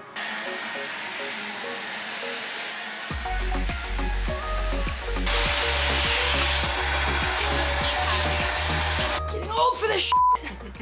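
Vacuum cleaner running through a hose with a crevice nozzle, a steady suction noise with a faint high whine, growing louder about halfway through and cutting off abruptly shortly before the end. Background music with a bass beat comes in about a third of the way in.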